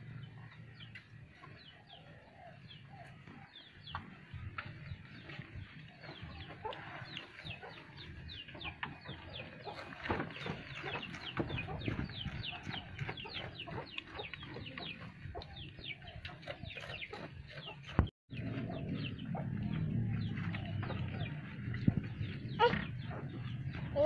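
Chickens clucking and chirping: a steady run of many short, high, falling calls, with a brief dropout about eighteen seconds in.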